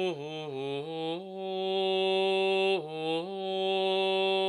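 A single unaccompanied male voice singing Gregorian chant in Latin. It moves through a few short notes in small steps, holds one long note for about a second and a half, dips briefly, and settles on another held note.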